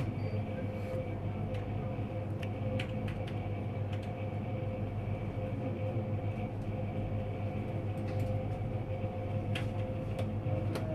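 Steady low hum of indoor machinery with a faint steady whine above it, and a few light, scattered clicks and taps.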